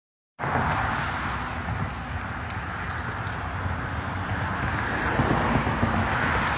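Steady rushing outdoor background noise with a low rumble underneath, starting suddenly about half a second in.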